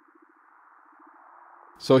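Very faint wavering low tone over a soft hiss, slowly rising in level, then a man's narrating voice begins near the end.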